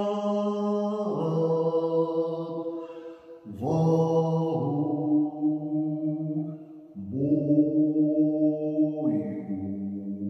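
A man singing solo and unaccompanied in a low voice, holding long notes of a Russian Orthodox chant. He moves to a new note every second or few, with a brief break for breath about three seconds in.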